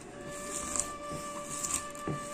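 A hand mashing and rubbing chopped chillies and herbs against a ceramic plate, a few faint scraping strokes, under a steady held note of background music.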